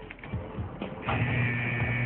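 Faint clicking of laptop keys, then about a second in a steady mechanical buzz with a low hum starts and holds.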